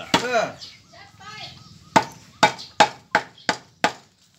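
Cleaver chopping raw beef on a wooden stump chopping block: six quick, sharp strikes, about three a second, in the second half.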